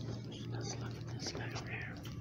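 Whispering: short, breathy, hissing syllables with no voiced pitch, over a steady low hum.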